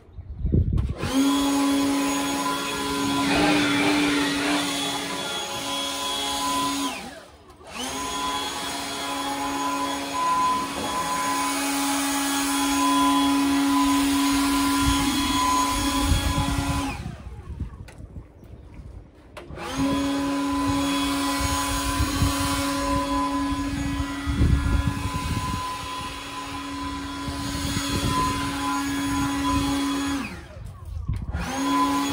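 Handheld leaf blower running with a steady whine. It is switched off and on again twice: a brief break about seven seconds in, and a longer pause of a couple of seconds a little past halfway.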